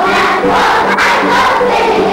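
A large group of young children singing together, many voices loud and not quite in unison, so the sound blurs toward a crowd of voices.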